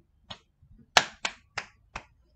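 A person clapping his hands, about four sharp claps in the second half, after one faint tap.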